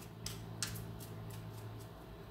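A few light, sharp clicks, about a quarter second and just over half a second in, over a steady low hum.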